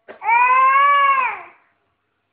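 A toddler's single long, loud squeal, held at one pitch for about a second and then dropping away, just after a sharp click.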